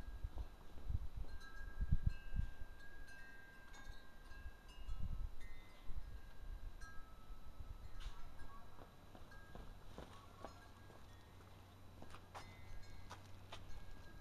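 Wind chimes ringing faintly and on and off, several different pitches sounding one after another, with a few low thumps in the first half.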